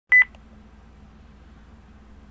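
A short electronic beep, a pure high tone pulsing twice in quick succession right at the start, followed by a faint steady low hum.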